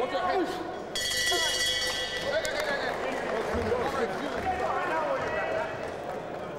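Boxing arena crowd shouting and calling out, with the ring bell ringing about a second in to end the round.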